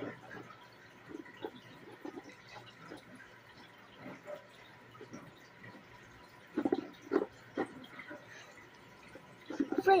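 Lego bricks being handled and moved on a wooden tabletop: scattered soft clicks and knocks, with a few louder knocks a little after halfway through.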